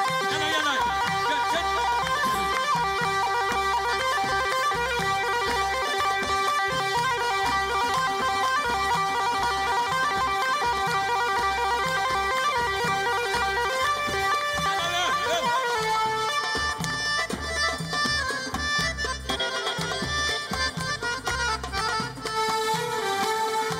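Traditional Middle Eastern band music: accordion and keyboard playing a held melody over a steady drum beat.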